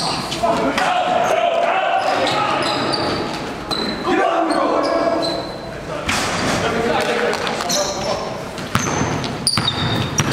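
Basketball being played in a large, echoing gym: indistinct shouting from players and onlookers, the ball bouncing on the court, and short high-pitched sneaker squeaks on the floor.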